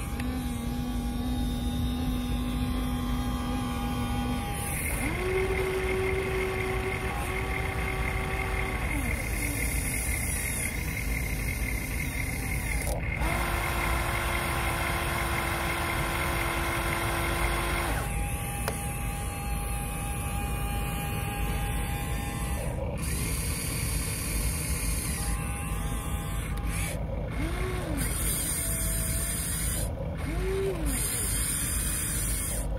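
Electric motors of a Huina RC toy excavator whining in separate runs of a few seconds as it swings, digs and lifts. Each whine glides up, holds a steady pitch and glides down again, over a constant background hiss.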